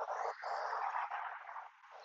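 Faint, steady outdoor background hiss with no distinct event, fading away near the end.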